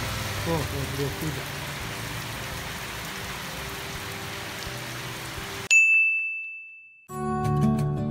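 Steady heavy rain, an even hiss, for the first five and a half seconds. It is cut off by a single bright electronic ding that rings and fades away, and after a brief silence background music with plucked guitar-like notes begins near the end.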